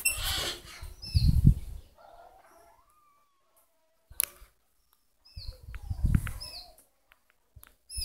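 Maritacas (small parrots) giving short calls that drop in pitch, in two bunches with quiet gaps between. Low rumbling noise comes and goes under the calls.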